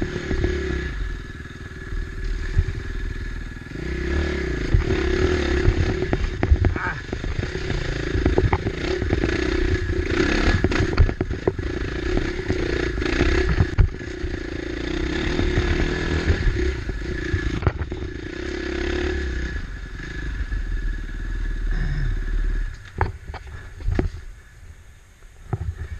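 KTM 450 XC-F single-cylinder four-stroke dirt bike engine working at low revs up a steep rocky trail, its note rising and falling with the throttle. Tyres and chassis clatter and knock over rocks throughout. Near the end the engine sound drops sharply as the bike stops.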